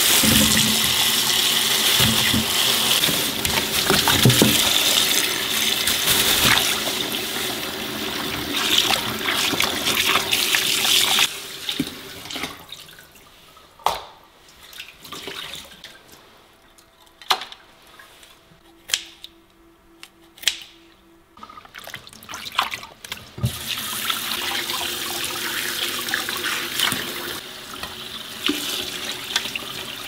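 Kitchen tap running hard into a stainless steel bowl in the sink, water splashing. It stops about eleven seconds in, leaving a stretch of scattered knocks and clatter, then the tap runs again for several seconds near the end.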